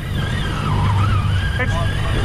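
Boat engine running steadily under way, a loud low hum with water rushing along the hull.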